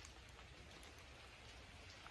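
Near silence: faint forest ambience with light rain pattering, scattered soft drop ticks over a low hiss.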